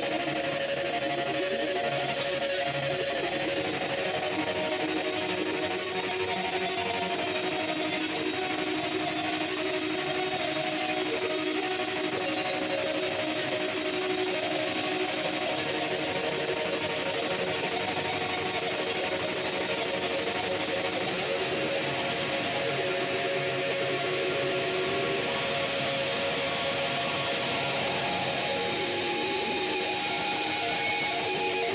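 Live rock band playing an instrumental passage on electric guitars, bass guitar and drums, with long held guitar notes over a steady, dense wall of sound.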